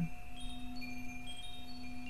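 Wind chimes ringing, scattered high notes sounding one after another over a steady low drone.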